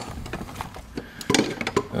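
Metal hand tools (screwdrivers, wrenches, a ratchet) clinking and clattering against each other in a steel tool chest drawer as a hand sorts through them: a handful of scattered knocks and clinks.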